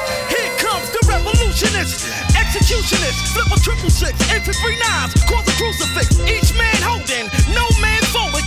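A 1990s hip hop track playing in a DJ mix, with rapping over a beat. A falling sweep dies away at the start, and the heavy bass and drums come in about a second in.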